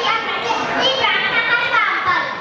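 A young boy speaking into a microphone, a continuous high-pitched child's voice.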